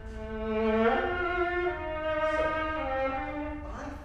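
A viola played with the bow: one held low note, then a short phrase that steps up and comes back down note by note, fading out near the end.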